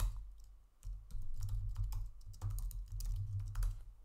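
Typing on a computer keyboard: a run of irregular key clicks, with a short break about half a second in before the typing picks up again.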